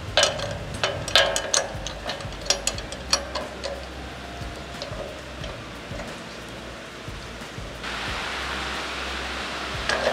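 Metal hold-down hardware on a Wood-Mizer MB200 Slabmizer's steel bed being set to clamp a slab, with a cordless driver: a string of sharp clicks and knocks over the first few seconds. About eight seconds in, a steady hiss comes in.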